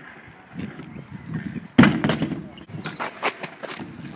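Stunt scooter wheels rolling over a wooden skatepark ramp, with one sharp clack of the scooter striking the ramp a little under two seconds in and smaller knocks after it.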